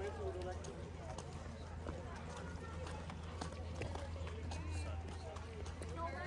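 Footsteps on wet concrete pavement, short scattered steps, with the indistinct chatter of a crowd of people walking nearby.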